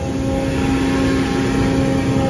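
Steady mechanical drone of running machinery: a strong low hum with a few higher steady tones over a rushing background.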